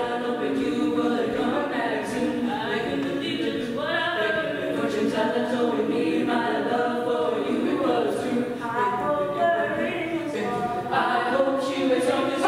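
All-female a cappella group singing in harmony, voices only with no instruments.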